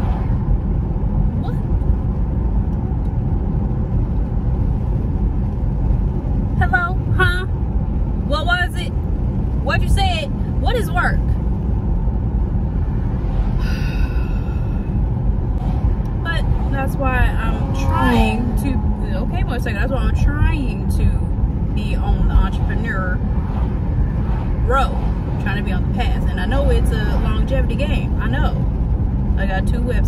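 Steady low road and engine noise inside a moving car's cabin.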